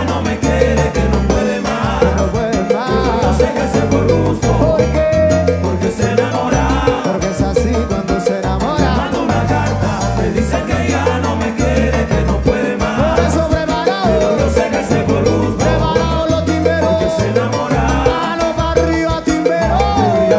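Live salsa band playing at full volume with a steady dance rhythm: congas, drum kit, bass guitar and keyboards.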